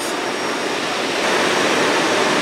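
A steady rushing roar with no distinct pitch, growing a little louder after about a second.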